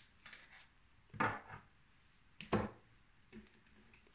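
A deck of cards being handled and lifted from its plastic stand on a tabletop: a few short knocks and scrapes, the two loudest about a second and two and a half seconds in.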